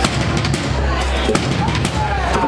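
Loud live drums and electronics: a Pearl drum kit played hard, with sharp snare and cymbal hits, over a heavy low bass that comes and goes and short gliding tones from the electronics rig.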